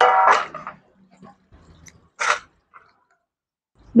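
A short voice sound at the start, then soft handling sounds and one brief scrape a little over two seconds in, as fresh okra pods are cut with a small knife over a steel plate.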